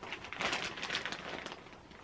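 Clear plastic packaging bag crinkling as it is handled, the crackling strongest in the first second.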